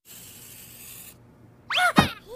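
Cartoon sound effects: a pencil-scribbling hiss for about a second, then a short squeak that bends in pitch, ending in a sharp pop near the end.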